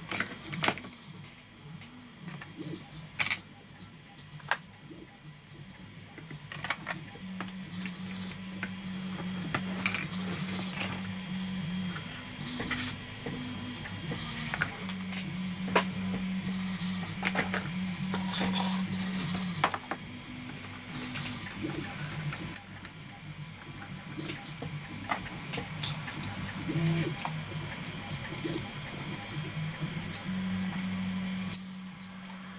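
Sharp clicks and clinks of plastic roller-stand units being handled and set onto the metal rails of a model-railway test track, over background music of sustained low notes.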